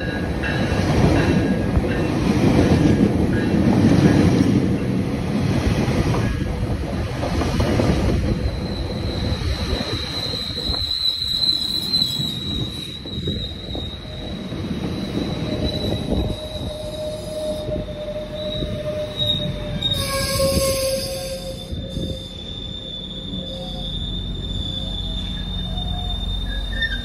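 GO Transit bilevel passenger coaches rolling past close by as the train slows, with a heavy rumble of wheels on rail. From about nine seconds in, a steady high-pitched squeal rises above the rumble as the train brakes. A lower squeal tone joins about two-thirds of the way in and slides slightly down.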